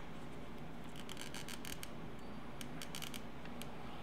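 Sheets of decorative paper being handled and laid on a binder: faint rustles and small ticks in two short spells, over a steady low hum.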